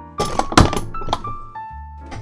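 A few knocks and a thunk as a part is worked loose and pulled out of a Power Mac G5's case, loudest about half a second in, over background music.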